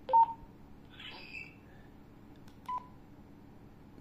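Handheld two-way radios beeping during radio-to-radio frequency copying: a short, loud electronic beep just after the start and a quieter one near the end, with a faint higher chirp about a second in. The beeps accompany a channel being transmitted from a PMR-style radio and picked up by a radio in clone mode.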